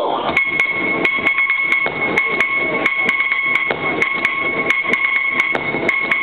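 A sound-effect break in the dance music mix: a steady high ringing tone over fast, evenly spaced metallic clinks, about four a second.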